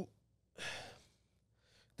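A man's short, breathy exhale, a sigh, about half a second in.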